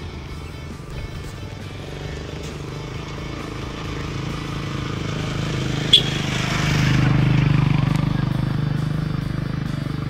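Background music, with a motorcycle engine passing close by. The engine grows louder, is loudest about seven to eight seconds in, then fades. A sharp click comes about six seconds in.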